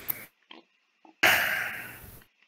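A loud burst of breath noise into a voice-chat microphone about a second in, fading over about a second, after a short burst and a couple of faint blips. The sound cuts in and out abruptly between them.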